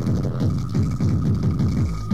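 Hardcore tekno from a DJ mix: rapid kick drums, each falling in pitch, several a second, over a faint steady high tone.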